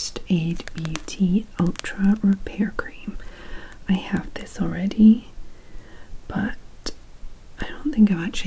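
A woman speaking softly, close to a whisper, with a couple of sharp clicks about six and seven seconds in.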